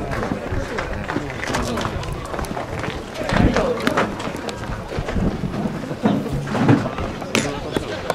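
Players' shouts and calls across a baseball field during fielding practice, with sharp knocks of a rubber ball being caught and thrown. Near the end comes the loudest crack, a fungo bat hitting the ball.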